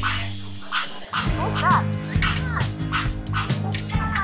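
Background music with a steady beat runs throughout. Over it, about a second and a half in, come a few short dog-like barks from a toy, a Blue's Clues school bus whose buttons are being pressed.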